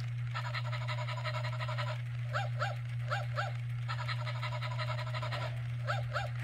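Electronic toy Dalmatian puppy barking: short yips in quick pairs, broken by two longer stretches of rapid yapping about a second and a half each, over a steady low hum.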